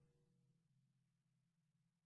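Near silence as the tail of a piece of music fades out.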